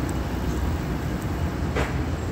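Street traffic: a steady low rumble of cars on a city road, with a short swish near the end.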